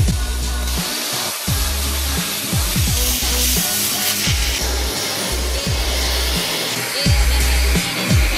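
Handheld plasma cutter hissing steadily as it cuts through steel plate, under background music with a heavy bass beat.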